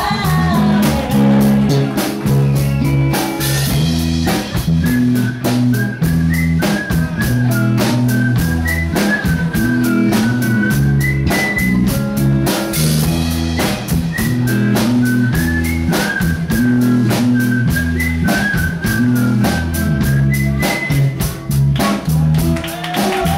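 Live band playing an instrumental passage with no singing: electric guitars, bass guitar and drum kit keep a steady beat, with a line of short high melody notes above.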